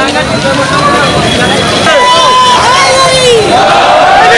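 Dense procession crowd shouting and calling out, many voices overlapping loudly, with a few long rising and falling calls in the middle.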